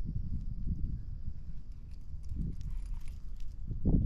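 Wind buffeting the microphone with an irregular low rumble, with a few faint ticks and a short low thump just before the end as the fishing rod is swept back to set the hook.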